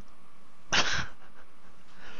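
A person laughing once, a single short breathy burst about three-quarters of a second in.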